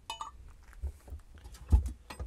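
Light clicks and knocks of a steel scissor jack and tools being handled in a car trunk's spare-tire well, with a short metallic clink at the start and a heavier thump near the end.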